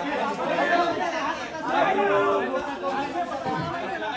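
Overlapping chatter of a group of men talking over one another.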